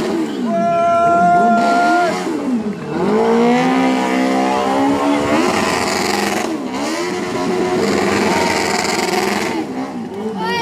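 Motorcycle engine revved hard, its pitch rising and falling, then held high while the rear tyre spins on the asphalt in a smoking burnout. From about halfway in, a loud hiss of tyre noise mixes with the engine.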